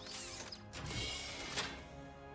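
Mechanical servo and metal sounds of a suit of power armor moving, in two bursts with a sharp clank near the end, over sustained background music.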